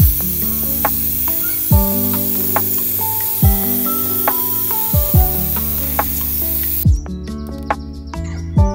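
Airbrush spraying a final coat of paint: a steady hiss of compressed air that cuts off about seven seconds in, under background music with a steady beat.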